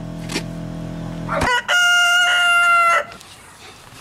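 A steady low hum cuts off abruptly about a second and a half in, then a rooster crows loudly once, a long held call of a little over a second that falls slightly at the end.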